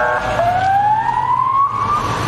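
Ambulance siren: a brief steady multi-tone blast, then a wail that rises steadily in pitch for about a second and a half.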